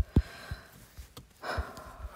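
Repeated fingertip taps on a phone touchscreen that isn't responding, heard as a quick run of dull knocks about three a second. A breathy exhale comes about one and a half seconds in.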